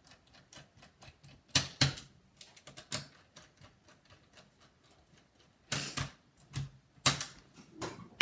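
Scattered sharp clicks and taps of a precision screwdriver on the CPU heat sink screws of a Dell Latitude E6510 laptop as the heat sink is screwed down. A few louder clicks come about two seconds in, and the loudest come near the end.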